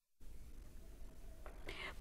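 A moment of dead silence at the edit, then faint room tone with a soft intake of breath near the end, just before a woman starts speaking.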